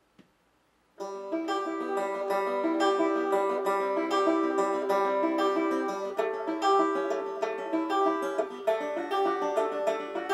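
Five-string banjo picked in a quick run of notes through the song's intro chords, Em, C, A and D. It starts about a second in.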